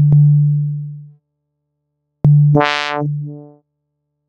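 Reaktor Blocks software modular synthesizer patch sounding two low notes, each starting with a click and fading out over about a second. On the second note the filter opens to a bright buzz and closes again.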